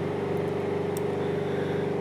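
A steady mechanical hum that holds one even pitch throughout, with no change in level.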